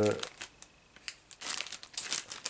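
Clear plastic parts bag crinkling as it is handled in the hands, a string of short rustles that starts about one and a half seconds in, after a trailing spoken syllable at the very start.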